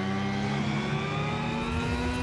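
An intro riser: a steady drone of several tones gliding slowly and evenly upward in pitch, at an even level.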